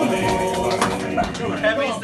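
Male voices holding the last sung note of a sea shanty together, fading out about a second in, followed by talk among the group.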